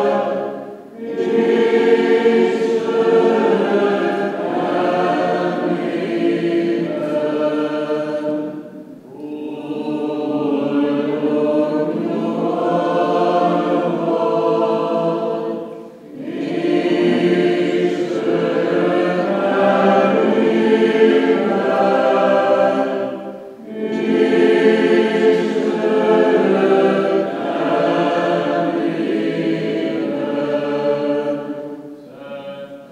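Choir singing unaccompanied Greek Catholic funeral chant, in long phrases broken by short pauses about every seven seconds.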